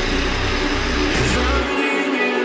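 Background music with a bass line and guitar; the bass drops out near the end.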